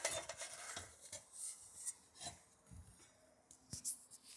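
Faint rubbing and a few soft, scattered knocks and clicks: handling noise from a handheld phone camera being carried while walking.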